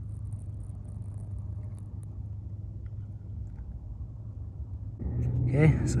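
A steady low rumble with no distinct events, cut off about five seconds in by a louder shot with speech.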